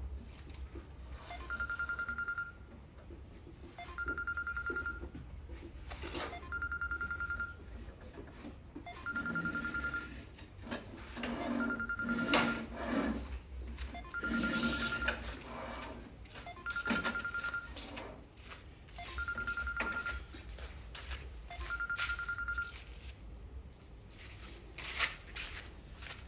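A telephone ringing: a trilling electronic tone about a second long, repeated every two and a half seconds, nine times in all. Scattered knocks and scrapes from tile work sound between the rings.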